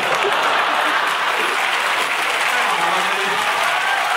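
Large audience applauding steadily in a concert hall.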